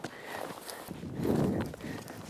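Dry bracken and logging slash crunching and rustling under boots and a steel planting spade on a hillside, with a louder scuffing about halfway through.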